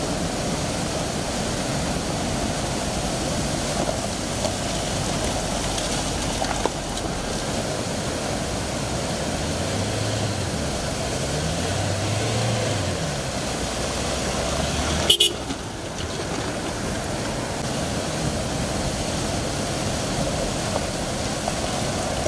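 Fast river water rushing over rocks, with four-wheel-drive vehicles driving through it; an engine revs up and down twice around the middle. A sharp click comes about fifteen seconds in.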